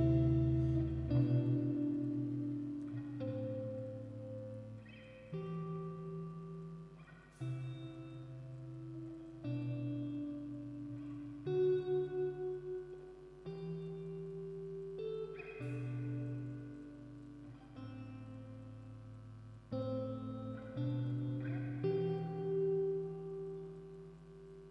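Electric guitar playing a slow, clean outro alone, one held note or chord about every two seconds, each ringing out with reverb, after the full band stops about a second in. It fades away near the end.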